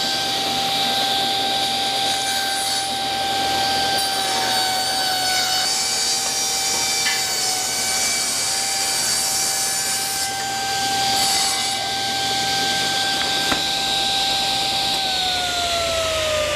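Table saw running at speed while a leg blank clamped in a plywood jig is fed through the blade for a taper cut; the cut adds a harsher ringing over the steady motor tone from about four to about twelve seconds in. About a second before the end the saw is switched off and its pitch begins to fall as the blade winds down.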